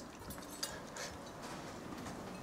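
Faint clinks and taps of drinking glasses and tableware over quiet room tone, a couple of light ticks about half a second and a second in.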